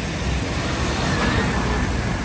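Steady city street traffic on a wet road, with the low engine rumble of a delivery van passing close by.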